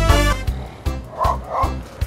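Upbeat background music with a steady beat, with two short bark-like yelps a little past the middle.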